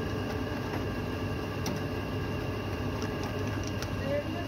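Steady electric hum of a plastic-plate moulding press, with a few sharp metallic clicks and taps as a metal hand tool pries moulded plates loose in the mould.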